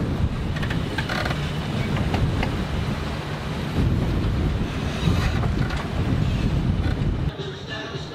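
Wind buffeting the microphone over the steady rush of water along a moving catamaran's hulls, a low rumbling noise throughout; it drops away abruptly shortly before the end.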